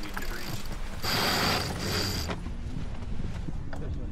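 A sailboat's sheet running fast through its block and winch: a rasping whir that starts about a second in and lasts just over a second, over wind and water noise.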